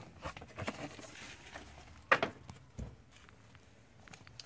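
Light clicks and knocks of a car's plastic interior door trim panel being handled after it has been unclipped, with one sharper knock about two seconds in.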